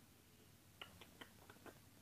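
Near silence with a quick run of about six faint clicks in the second half: a small plastic toy fork tapping against plastic toy food and plate.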